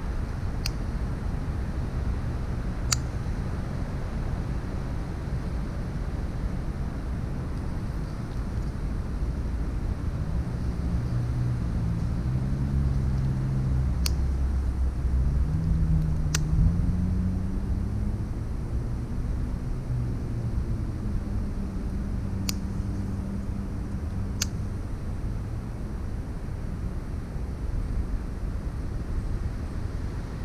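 Steady low rumble of distant motor traffic, with an engine's drone rising and falling in pitch through the middle, and a few sharp clicks scattered through.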